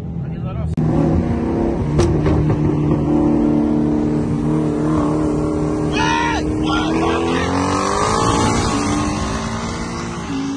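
Car engine running hard at high speed, its pitch holding steady and then climbing as it accelerates near the end, with a brief shout partway through.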